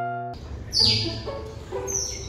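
Asian small-clawed otters chirping: two high squeaks, each falling in pitch, about a second apart, over a steady background hiss. Just before, a piano note from background music cuts off in the first moment.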